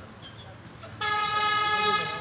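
A horn sounds once, a steady, unwavering tone that starts abruptly about a second in and holds for about a second.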